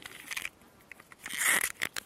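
Crinkling, crackling rustles as a PVA bag of crushed pellets is handled and wrapped with PVA tape. The loudest rustle comes about a second and a half in, after a short quiet gap, followed by a few small clicks.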